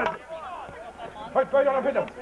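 Indistinct voices of spectators talking and calling out, loudest about one and a half seconds in.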